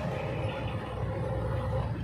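Bus cabin noise while driving: a steady low rumble of engine and road, with a faint steady hum.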